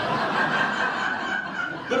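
Laughter that carries on for about two seconds.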